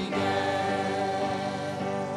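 Live worship music: a woman singing one long held note into a microphone over electric keyboard accompaniment.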